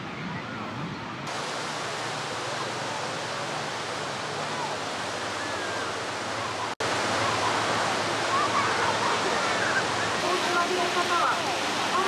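Beach ambience: a steady wash of small waves breaking on the shore, with distant voices of people on the beach. The sound drops out for an instant about seven seconds in and comes back louder.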